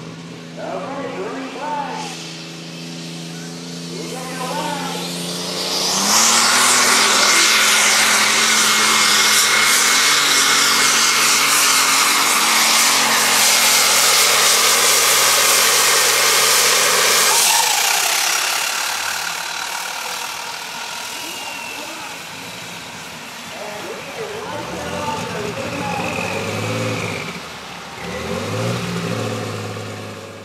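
Alcohol-fueled New Holland super stock pulling tractor's engine running steadily at the line, then opening up to full power about six seconds in for a loud pull of roughly eleven seconds, and dropping off sharply as the pull ends. A voice is heard over the quieter engine near the end.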